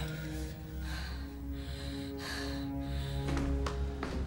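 Tense film score of low, sustained held notes, with a few short breaths heard over it.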